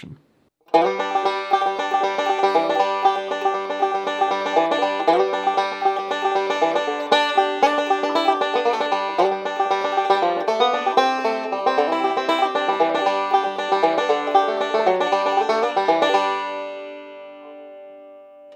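Five-string resonator banjo playing bluegrass backup rolls through G, C and D chords, starting just under a second in. The last notes ring and fade away over the final two seconds.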